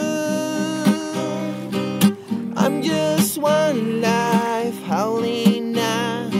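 Instrumental break of an acoustic song: strummed acoustic guitar chords, with a lead melody that slides and bends in pitch through the middle.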